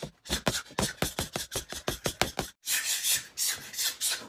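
Rapid flurry of punches on a free-standing reflex punching bag, about eight quick hits a second, stopping about two and a half seconds in. A rushing, scraping hiss follows for about a second.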